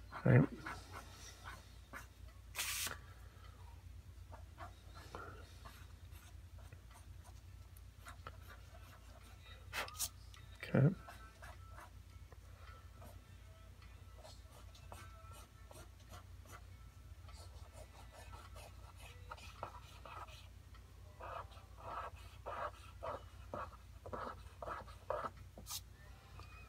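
Pen-style eraser (Tombow Mono) rubbing on toned sketch paper in short strokes to lift graphite, faint, with a quicker run of scrubbing strokes in the last several seconds. A couple of sharp clicks and a steady low hum sit under it.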